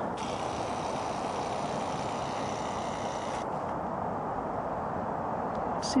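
Steady rush of distant highway traffic, an even noise with no single vehicle standing out.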